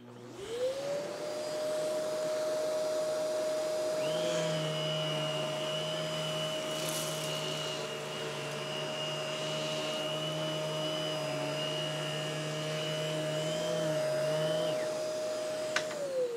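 Canister vacuum's suction motor starting with a rising whine, then running steadily. About four seconds in, the battery-powered EBK360 DC power nozzle's brush motor comes on, adding a higher whine and a low hum as the head is pushed over carpet. The nozzle motor stops shortly before the end, and the vacuum motor winds down with a falling whine at the very end.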